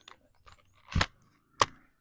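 Two sharp knocks, about a second in and again just over half a second later, the second slightly louder.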